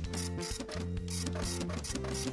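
Printer printing sound effect, a quick, evenly repeating mechanical chatter as a page feeds out, over background music with sustained low notes.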